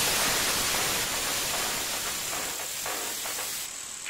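Television static: a steady hiss of white noise that slowly gets quieter, its highest part dropping away near the end.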